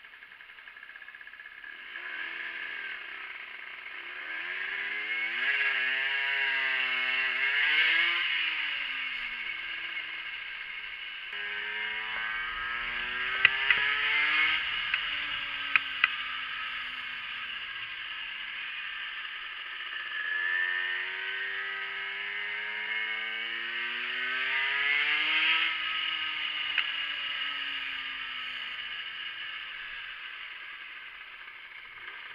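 50cc moped engine revving as the moped rides. Its pitch climbs to a peak and falls away three times, over a steady hiss, with a few sharp clacks around the middle.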